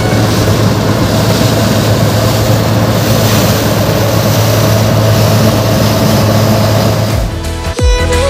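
Bizon Z056 combine harvester running steadily at work in wheat, its engine and threshing machinery heard close up as a dense, even drone with a low hum. Music cuts back in about seven seconds in.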